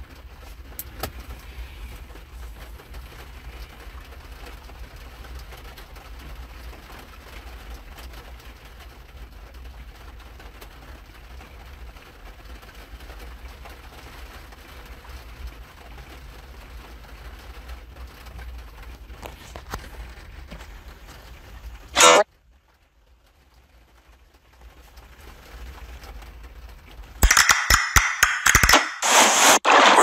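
Steady low background hum and faint hiss for about twenty seconds, cut off by a brief loud burst, then a few seconds of near silence. Near the end, loud advertisement music starts playing from the phone.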